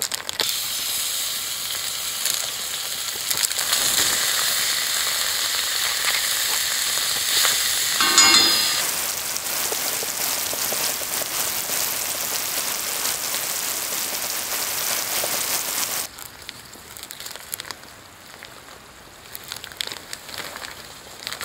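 Nikumiso (minced meat and miso) sizzling in a cast-iron skillet, a dense, steady frying hiss, with a brief pitched sound about eight seconds in. The sizzle cuts off suddenly about sixteen seconds in, leaving a much quieter background with faint crackles.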